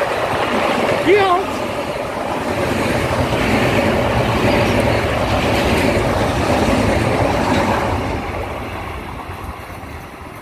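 Long Island Rail Road M7 electric multiple-unit train running past close by, a steady rush of steel wheels on rail that fades as the train pulls away near the end.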